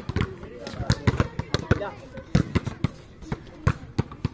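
Volleyballs being hit and bouncing on a hard dirt court: an irregular series of sharp smacks and thuds, several a second.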